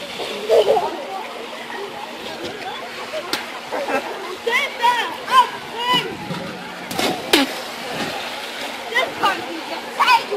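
Children's voices calling and shouting around a swimming pool, with water splashing. A sharper splash comes about seven seconds in as a boy jumps into the pool.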